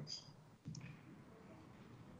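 Near silence: faint room tone over a call line, with one brief soft click about two-thirds of a second in.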